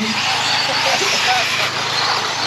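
Several 1/10-scale RC mini truggies racing around a dirt track, their motors and tyres making a steady high-pitched whir.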